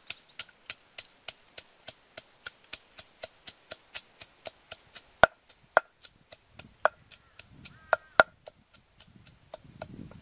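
Wooden pestle pounding garlic cloves in a wooden mortar: a steady run of sharp knocks about three or four a second, then slower, irregular strikes, several of them louder, in the second half.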